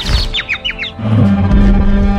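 Cartoon sound effect of little birds tweeting, a run of quick falling chirps in the first second, over background music. A low held note in the music takes over after about a second.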